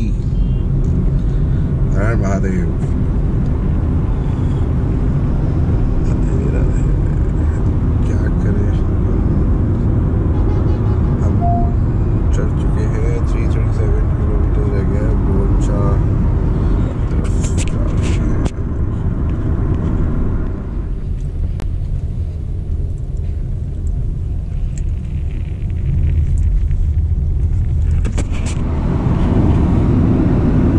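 Steady road and tyre rumble inside the cabin of a Honda City e:HEV hybrid sedan driving on a highway. The rumble eases for a few seconds about two-thirds of the way through.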